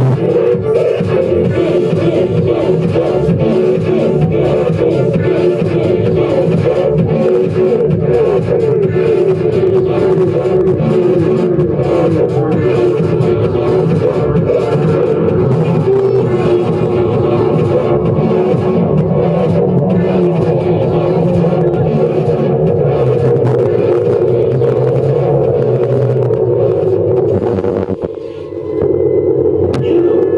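Live band music, loud and continuous, with a brief drop in level a couple of seconds before the end before it comes back in.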